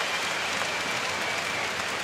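Arena crowd applauding steadily in an ice hockey rink, an even wash of clapping from the stands.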